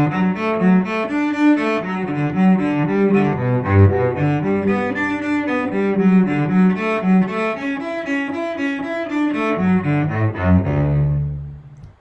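Solo cello, bowed, playing a quick arpeggio pattern that climbs and falls across the strings as a made-harder practice exercise. It ends on a long low note that fades out about a second before the end.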